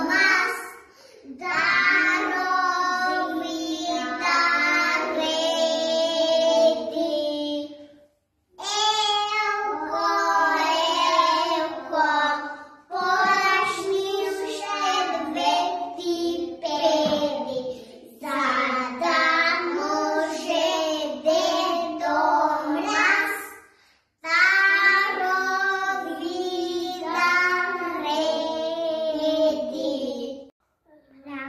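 Young children singing a song, in long phrases separated by short pauses.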